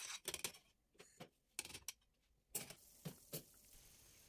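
A metal whisk and a stainless steel saucepan of béchamel knocking together in a few faint, irregular clicks and taps.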